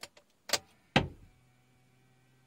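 Clicks of a Toyota Fortuner's key and ignition switch: a few light clicks, then two sharp ones about half a second apart, the second the loudest. A faint steady hum follows as the dashboard electrics switch on, with the engine not yet running.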